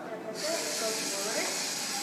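Small electric drive motors of a LEGO Mindstorms NXT robot whirring steadily as it drives backwards, switched on by its ultrasonic sensor sensing something in front of it. The whir starts suddenly about a third of a second in.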